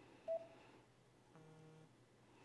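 A short, clear electronic beep, then a lower, buzzier tone lasting about half a second, over quiet room tone.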